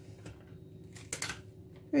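Brief handling noises of whole green peppers being moved on a plastic cutting board: a faint rustle about a quarter second in and a louder short rustle a little over a second in.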